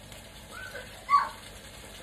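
Two short chirp-like calls over the faint sizzle of food frying in a wok: a soft one about half a second in, then a louder one that falls in pitch just after a second.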